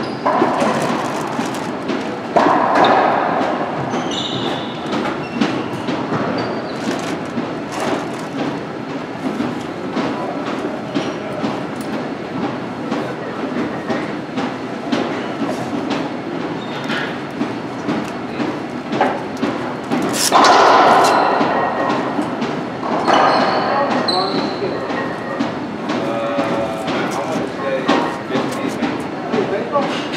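Echoing racquetball court: scattered sharp ball and racquet impacts off the walls, with indistinct voices.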